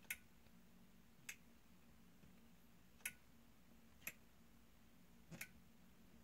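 Five short, sharp clicks at uneven intervals, a second or more apart, as fingers press and tap the top edge of a closet door at its light-switch sensor.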